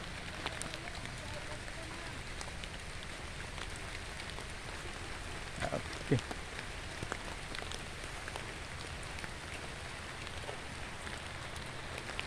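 Light rain pattering outdoors: a steady hiss with scattered small drop ticks. Two faint, short falling sounds come about halfway through.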